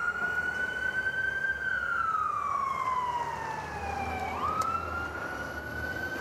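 Fire truck siren sounding a slow wail: one tone that sags slowly in pitch for a few seconds, then sweeps sharply back up about four seconds in, over a low engine rumble.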